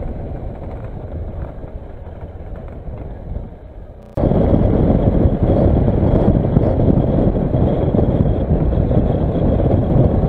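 Kawasaki Versys motorcycle riding noise: engine and wind rumble on the camera's microphone, moderate at low speed. About four seconds in, an abrupt cut to much louder wind and engine noise at road speed.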